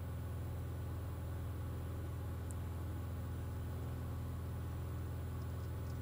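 Cockpit of a Cirrus SR20 in flight: a steady, low drone from its piston engine and propeller, unchanging in pitch and level.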